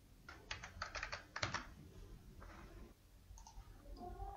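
Faint computer keyboard keystrokes: a quick run of about ten key presses in the first second and a half, then a few softer ones, as dimension values are typed in.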